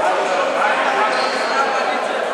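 Echoing sound of an indoor basketball game: players' and spectators' voices overlapping in a large sports hall, with a basketball bouncing on the court.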